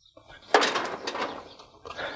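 Steel cattle squeeze chute rattling and clanking: a sudden clatter about half a second in that dies away over about a second, then another knock near the end.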